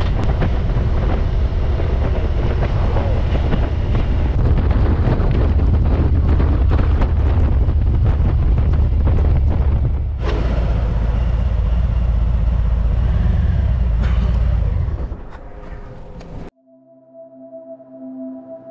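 Harley-Davidson Road King V-twin engine running at low speed under wind noise on the rider's microphone. The sound fades and cuts off about a second and a half before the end, giving way to soft music.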